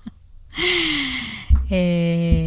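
A woman's breathy, sigh-like vocal sound falling in pitch, then after a short pause a long, steady held vowel in a woman's voice.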